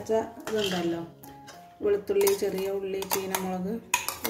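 A metal spoon clinks several times against a steel cup and cooking pan, mostly in the second half, as a chopped chilli mixture is scraped into the pan. Background music with a melody plays throughout.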